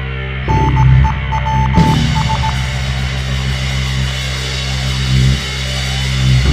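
Live rock band's amplified instruments holding low, sustained droning notes with amplifier hum, the pitch shifting a few times. A short run of high beeps sounds over them in the first couple of seconds.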